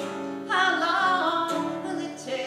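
A woman singing a folk song to her own strummed acoustic guitar; a strum sounds at the very start, and a long sung line begins about half a second in, bending in pitch as it is held.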